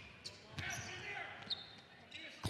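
Faint gym ambience with a basketball being dribbled on a hardwood court, a few sharp bounces standing out, one at the start and one about a second and a half in, over faint crowd voices.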